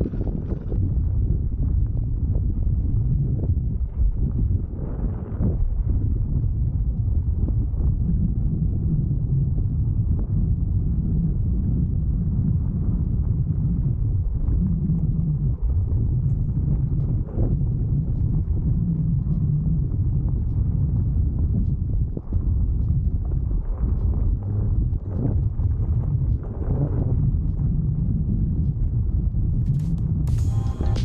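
Continuous low rumble from an electric unicycle's tyre running over a rough, stony dirt track, jolting with the bumps, mixed with wind buffeting the helmet-mounted microphone.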